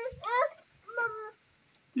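A young child's high-pitched wordless vocalizing: a wavering, rising "mm" cry in the first half second and a shorter one about a second in.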